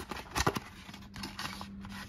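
A small cardboard gift box being flipped open and a sheet-mask sachet slid out of it: a few sharp card clicks and taps, the loudest about half a second in, then a soft rustle of the packet sliding against the card. A faint steady hum runs underneath.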